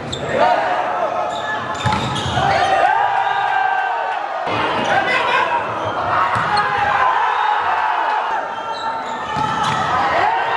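Volleyball rally in a large sports hall: sharp smacks of the ball being struck, with long shouts from players and spectators throughout.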